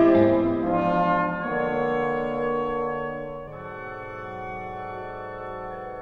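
Contemporary chamber ensemble music: sustained held chords that change about one and a half seconds in and again about three and a half seconds in, growing quieter.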